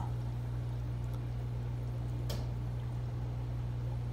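Steady low hum of running aquarium equipment, with one light click a little past two seconds in.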